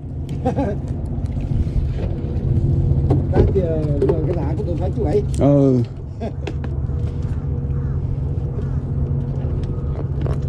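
A steady, low mechanical hum with evenly spaced overtones runs on without change. A voice talks briefly in the middle, and there are a few light knocks and clicks.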